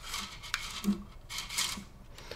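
Faint rustle of 3D-printer filament sliding through PTFE tubing and over the rollers of a printed filament buffer as it feeds back in by hand, with a sharp light click about half a second in.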